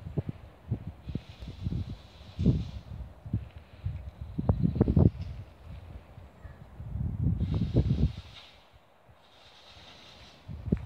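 Gusts of wind buffeting the phone's microphone as irregular low rumbles, falling away near the end, with a soft rustle of leaves in the trees.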